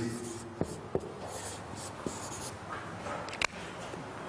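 Marker pen writing on a whiteboard: a few short scratchy strokes and light taps.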